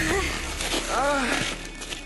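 Voices calling out in a few drawn-out cries that rise and fall in pitch, over background noise, with no clear words; the sound tails off in the second half.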